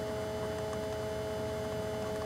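Steady electrical hum made of two steady pitches held at an even level over a faint hiss.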